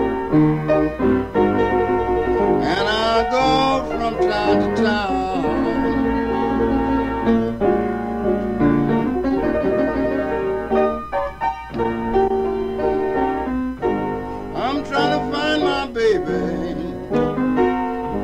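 Solo blues piano playing with a man singing, his voice coming in for a phrase a few seconds in and again near the end.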